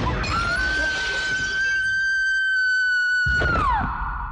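Window glass shattering, followed by a woman's long high scream that holds steady for about three seconds and drops away near the end. A heavy thud comes shortly after three seconds in.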